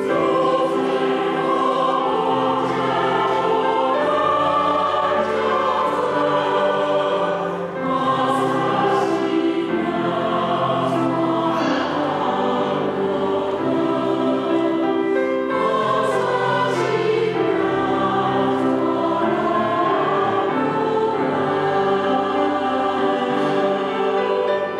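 Mixed-voice church choir singing a hymn in sustained chords, with grand piano accompaniment.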